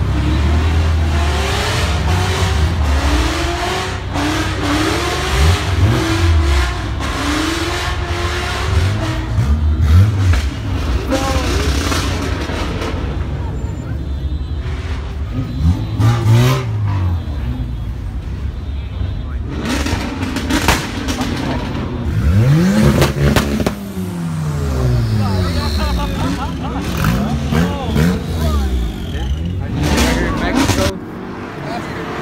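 Car engines revving and accelerating, their pitch climbing and falling several times, the biggest rise and fall about twenty-two seconds in, over a steady rumble of idling cars and crowd chatter.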